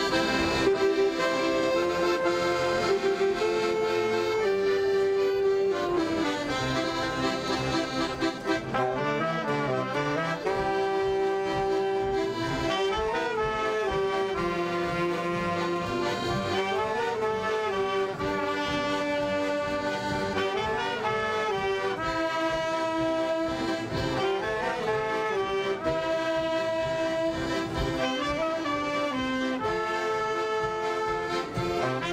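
Traditional music led by an accordion, with held notes under a stepping melody, playing steadily throughout.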